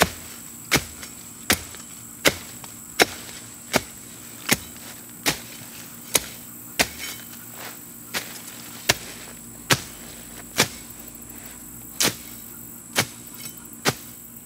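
Machete chopping through weed stems, a sharp stroke about every three-quarters of a second that comes less often in the second half.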